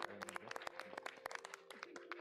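Faint, scattered hand clapping from a small group, applause at the end of a song.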